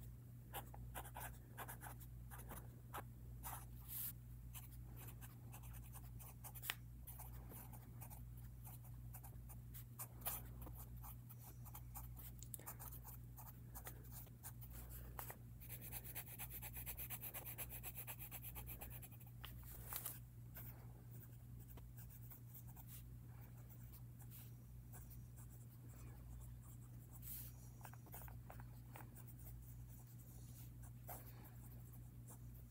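Fountain pen nibs scratching faintly across thin Tomoe River notebook paper as words are written, with a few sharp clicks and knocks scattered through. A denser run of scratching comes at about the middle. A steady low hum sits underneath throughout.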